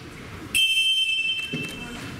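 A referee's whistle blown once, a steady high tone lasting just under a second, signalling the start of a wrestling bout.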